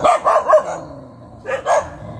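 A dog barking: a quick run of about four barks in the first half second, then another short burst about a second and a half in.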